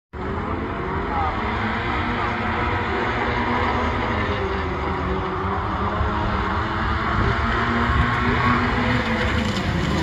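A pack of autograss race cars running on a dirt track, several engines revving up and down together in a steady mix that grows slowly louder.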